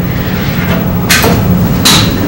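Two short, sharp knocks, one about a second in and one near the end, over a steady low hum.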